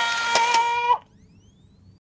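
Polaroid 636 Talking Camera's small built-in speaker holding the last note of its recorded voice message, thin and buzzy, with two clicks of the shutter partway through. The note cuts off just under a second in, leaving a faint rising whine.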